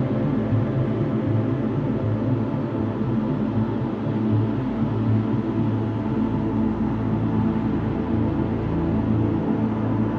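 Background music with sustained low notes and no clear beat.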